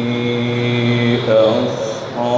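A man's voice in melodic Quranic recitation (tilawat) into a microphone: one long held note, which rises and changes pitch in the second half.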